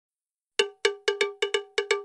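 Intro sting of a bell-like metal percussion sound, a cowbell-type note struck eight times in a quick, uneven rhythm. Each stroke rings briefly and dies away, all on the same pitch.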